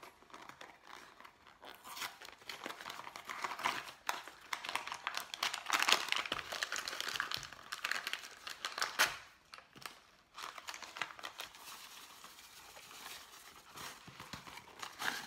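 Paper packaging of a box of Jiffy corn muffin mix being torn open and crinkled: several seconds of crackling, rustling paper with sharp tearing clicks, loudest in the middle, then quieter handling near the end.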